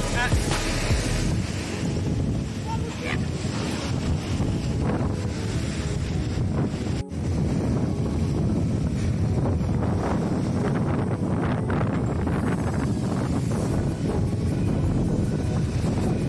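Small ocean waves breaking and surf washing up the beach, with heavy wind buffeting the microphone. A brief dropout about seven seconds in.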